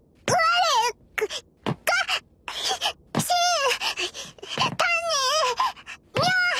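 A girl's high-pitched voice making a string of short wordless whines and grumbles, about half a dozen in a row, the pitch sliding up and down in each.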